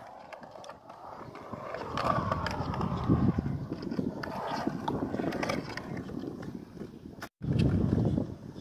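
Skateboard wheels rolling over a concrete skate bowl, the noise swelling and fading as the rider carves the transitions. It breaks off briefly near the end and comes back louder.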